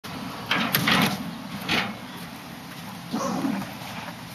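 An upright piano being shifted by movers on a truck's metal liftgate: three short bursts of scraping and creaking, about half a second in, near two seconds, and just past three seconds.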